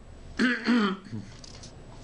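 A man clearing his throat once, in two short voiced parts, about half a second in.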